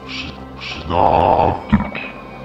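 Horror film soundtrack: a low sustained drone with two short hisses, then a loud, rough, creature-like sound effect about a second in and a sharp hit near the end.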